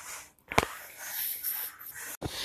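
Breathy rustling noise from a phone being handled and swung round, with one sharp click about half a second in.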